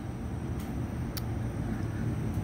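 Steady low rumble of the greenhouse's industrial fans moving air, with two faint ticks about half a second and a second in.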